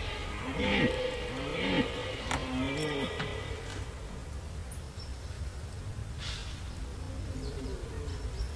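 Red deer stag roaring during the rut: three short, deep grunting roars in the first three seconds or so, each rising and then falling in pitch, before the calling dies away.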